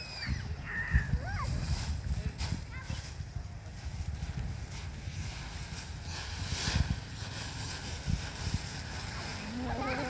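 Dry fallen leaves rustling and crunching as a child kicks, throws and wades through a deep pile of them, with a bigger surge of rustling about two-thirds of the way through.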